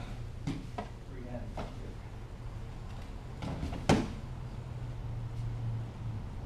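A single sharp thump about four seconds in as an aikido partner is taken down face first onto the training mat in an ikkyo pin.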